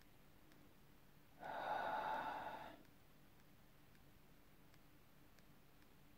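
A person breathes out audibly for about a second and a half, like a sigh. Faint clicks come before and after it as the buttons of a digital audio player are pressed to scroll through its album list.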